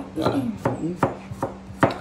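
A kitchen knife chopping on a cutting board: a few sharp strokes, roughly a second apart, the loudest near the end.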